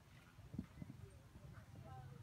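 Faint hoofbeats of a horse cantering on sand arena footing, with a louder thud about half a second in as it lands from a jump.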